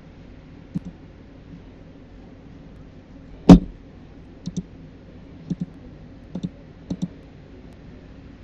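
Computer mouse clicks, several of them in quick press-and-release pairs, as windows are closed, with one much louder click or knock about three and a half seconds in. A low steady hum lies underneath.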